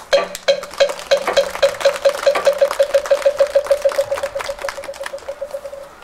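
Hollow wooden knocks on one steady pitch, spaced at first, then speeding up into a fast roll that fades away near the end. The struck-wood signal marks the close of a Buddhist dharma talk.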